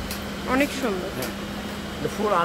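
A brief vocal sound about half a second in, over a steady low hum that runs throughout, with a couple of faint clicks.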